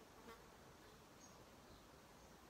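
Near silence: faint outdoor ambience with a faint insect buzz.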